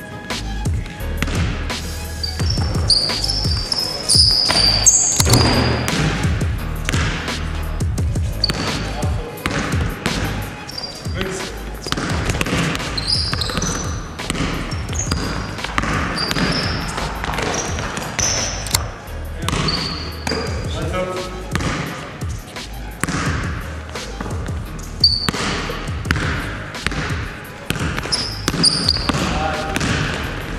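A basketball being dribbled and bouncing on a sports-hall floor, with repeated thuds and sneakers squeaking in short high chirps as players cut and stop, and players' voices calling out, in a large reverberant gym.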